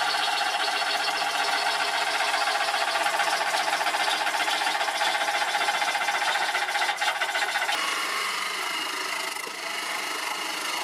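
A turning tool cutting into a large pine blank spinning on a wood lathe: a steady rough rush of shavings with a fast, rhythmic chatter. The sound changes in tone and softens slightly about eight seconds in.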